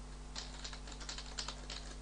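Computer keyboard typing: a quick run of keystrokes starting about half a second in, over a steady low electrical hum.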